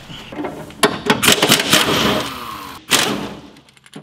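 Knocks, clicks and scraping of metal and brittle parts being handled in a car's stripped engine bay. A denser, louder scraping stretch runs from about a second in and dies away near the end.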